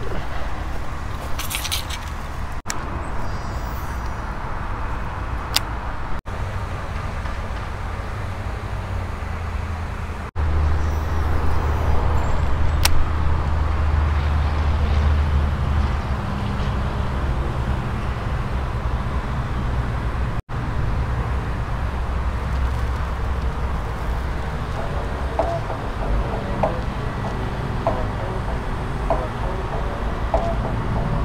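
Steady low outdoor rumble, louder for a few seconds near the middle, that breaks off and resumes abruptly a few times.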